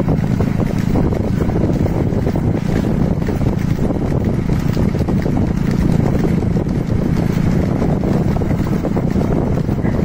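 Steady wind buffeting the microphone over a low, even road rumble, recorded from a moving vehicle.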